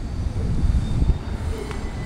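JR Kyushu 787-series electric limited-express train standing at a platform, giving a steady low rumble.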